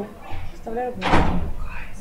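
A single loud thump about a second in, between snatches of speech.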